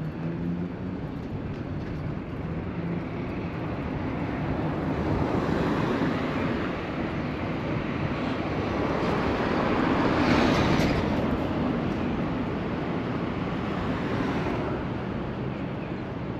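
Street traffic heard from a moving bicycle: a steady road rumble that swells, loudest about ten seconds in, as a vehicle goes by.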